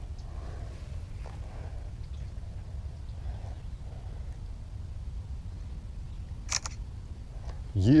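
Smartphone camera shutter sound, once, about six and a half seconds in, as a photo is taken, over a steady low rumble.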